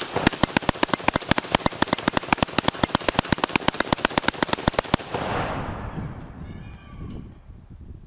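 AK-pattern rifle firing one long continuous burst of about ten shots a second, lasting about five seconds, followed by the report echoing away over the open field.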